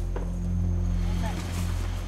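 A low, steady hum, with a faint click just after the start and brief, faint voices about a second in.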